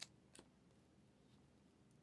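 Near silence: room tone, with two faint clicks in the first half second as trading cards are handled.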